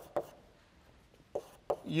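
Chalk tapping on a blackboard while writing: a few sharp taps, two near the start and two more in the second half, with a man's voice starting near the end.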